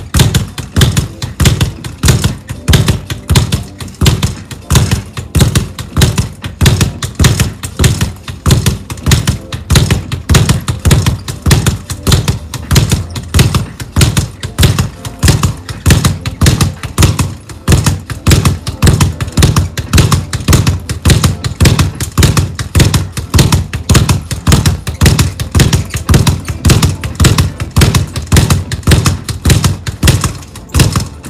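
A leather speed bag being punched in a fast, steady rhythm, several hits a second, rattling against a wall-mounted rebound board.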